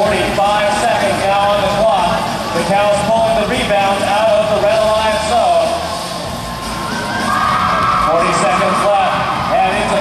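A man's voice over the arena's PA with crowd noise behind it for the first half. About seven seconds in, a steady held tone sounds for about two seconds.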